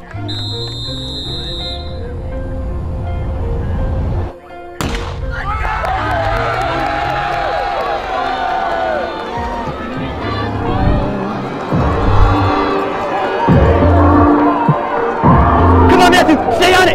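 Background music with a steady bass beat runs throughout. A high whistle tone sounds in the first two seconds. About five seconds in comes a single sharp crack, the starter's pistol for the cross-country race, followed by a crowd cheering and shouting over the music.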